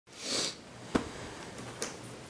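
A short sniff, then a sharp clack of a plastic VHS tape case being handled about a second in, and a lighter click near the end.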